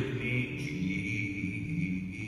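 A man singing one long held note, with acoustic guitar accompaniment.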